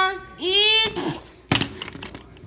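A child's voice singing two held notes, each sliding up at the start, in the first second, followed about a second and a half in by a sharp thump.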